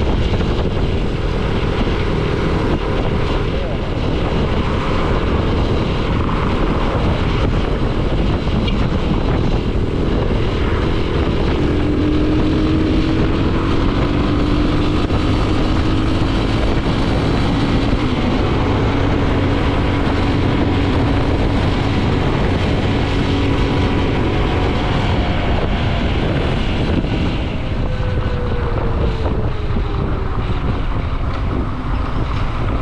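Wind rushing over the microphone of a moving motorcycle, with the engine running underneath at cruising speed. The engine tone drifts in the middle and falls near the end as the bike slows.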